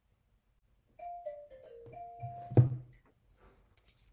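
A short electronic chime melody: four notes stepping down in pitch, then a return to the first, higher note, which is held. It ends in a sharp thump, the loudest sound.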